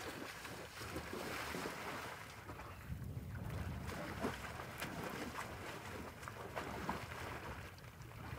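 A horse wading through belly-deep water, its legs splashing and churning the water in an uneven run of splashes, with wind on the microphone.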